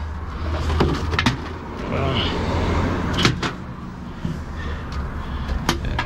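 Heavy truck diesel engine idling steadily, with a few sharp clicks and knocks as air-line couplings and electrical leads are handled.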